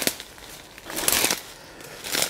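A footstep crunching and rustling through dry fallen leaves and brittle dead twigs and thorns, one burst about a second in.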